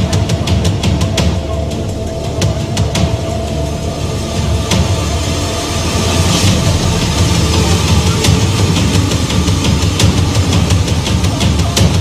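Background music with a heavy bass, laid over the footage.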